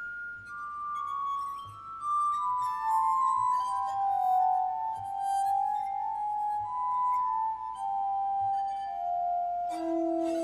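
Glass harmonica played with fingertips on its spinning glass bowls: pure, sustained tones, often two at once, in a slow melody stepping downward. Lower tones join just before the end.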